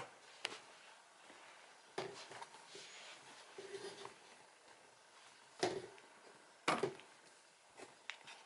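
Handling noise from the subwoofer teardown: a few separate knocks and light clatters as tools and the speaker cabinet are handled. The two loudest knocks fall past the middle, about a second apart.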